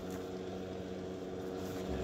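A steady low hum of a motor or appliance running, with several even tones held throughout.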